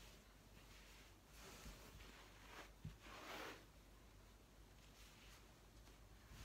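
Faint rustling of a cotton fabric block being handled and pressed down onto glue-basted quilt backing, in two brief spells with a soft tap between them.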